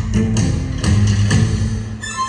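Music with a steady beat, about two beats a second.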